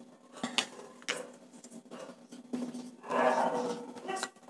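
A few faint clicks and taps, then, about three seconds in, a marker scraping across a whiteboard in short writing strokes.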